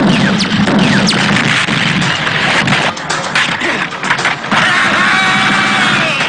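Action-film soundtrack: explosions and crashing impacts over music, with a few falling whistles early on.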